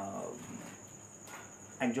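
A steady, high-pitched insect trill runs under a pause in a man's speech. His voice trails off at the start and comes back near the end.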